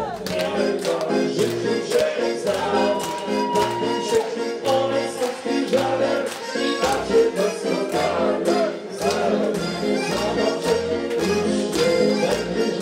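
Live dance music played on an electronic keyboard: a steady beat under held chords and a melody line.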